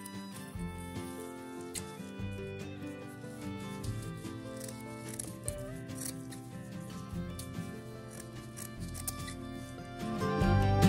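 Background instrumental music playing steadily, with scissors snipping jute rope several times over it.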